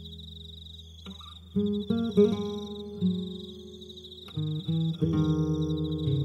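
Acoustic guitar picked slowly: a note dies away, then single plucked notes ring out from about a second and a half in, building to a fuller chord near the end. Underneath, a steady high cricket trill continues without a break.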